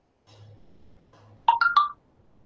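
An electronic notification chime: three quick, clear notes about a second and a half in, the second higher than the first and the third a little lower.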